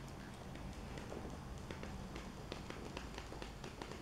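Faint, irregular clicks and ticks, more frequent toward the end, as a continuous bead of rubber-based glue is squeezed from a cartridge gun along a plastic arch corner strip.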